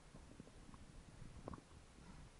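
Near silence: a faint low rumble with scattered small clicks and taps, a few slightly louder ones about one and a half seconds in.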